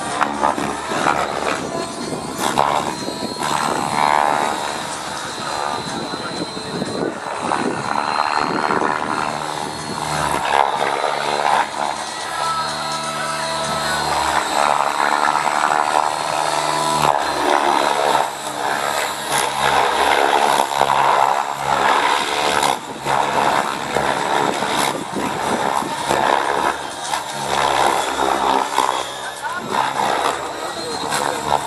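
Align T-Rex 700 radio-controlled helicopter flying 3D aerobatics low over the field: its rotor blades and drivetrain whir, and the loudness shifts with the manoeuvres. Music plays alongside.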